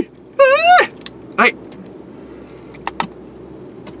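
A man's short, high-pitched rising squeal of a voice, followed by a spoken "hai". Two light clicks come close together about three seconds in.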